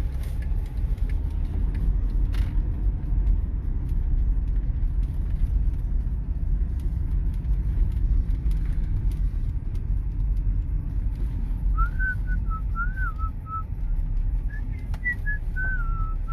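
Steady low rumble of a car driving, heard from inside the cabin. About twelve seconds in, a person starts whistling a short wavering tune that runs to the end.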